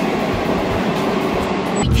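Steady running noise of a moving sleeper train heard from inside the carriage, an even rumble and hiss. Near the end it shifts abruptly to a louder, deeper rumble.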